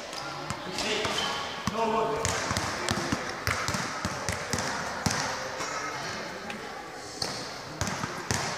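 Several basketballs being dribbled on an indoor court floor: irregular, overlapping bounces in a large hall.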